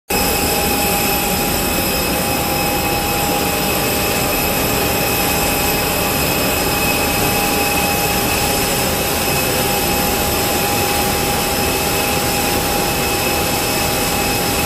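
Steady, loud jet turbine noise on an airport apron: an even roar with several steady, high-pitched whining tones, unchanging throughout.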